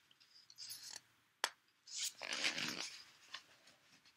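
Paper pages of a picture book rustling as the book is handled and turned, with a single sharp click about a second and a half in.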